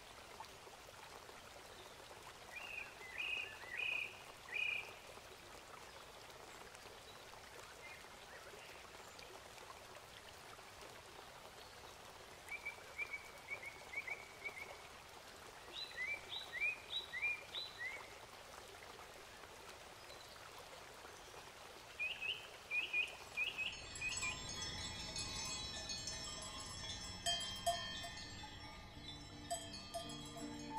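A faint steady hiss with four short bursts of small-bird chirping, each a quick run of four or five high notes. About 24 seconds in, music of many sustained ringing tones comes in and stays.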